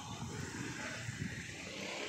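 Low, steady outdoor street background noise with no single clear source.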